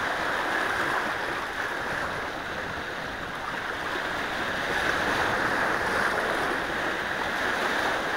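Small waves washing in and splashing among shoreline boulders, a steady hiss of surf that eases a little midway and builds again.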